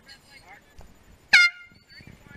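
One short, loud air horn blast about a second and a third in, from the race committee boat, of the kind sounded as a racing sailboat crosses the finish line.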